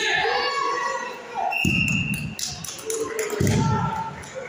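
Voices echoing in a large sports hall, with a referee's whistle blown once briefly about halfway through and two dull thuds.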